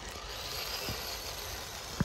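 Amewi Gallop 2 1/10-scale electric RC crawler driving slowly up a gravel trail: a faint, steady whine from its motor and gears, with a light click about a second in.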